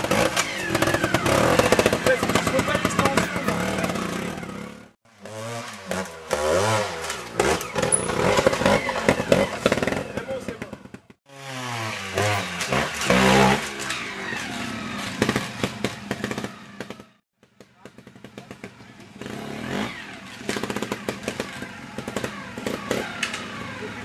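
Trial motorcycle engines revving in short, rising and falling bursts as the bikes are ridden up and over rocks. The sound breaks off abruptly several times between clips.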